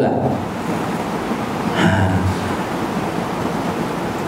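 Steady even hiss of background noise, with a brief faint voice about two seconds in.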